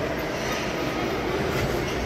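Steady low rumble and noise of a large indoor lobby, an even din with no distinct events.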